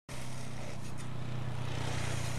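Asphalt paver's diesel engine running steadily, a constant low hum.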